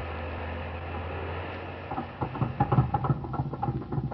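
Radio sound effect of a speedboat engine starting up about halfway through and running with an uneven, rapid putter. It takes over from a steady low drone that stops at the same moment.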